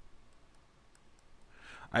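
A few faint, scattered clicks of a stylus tip tapping a tablet screen while writing.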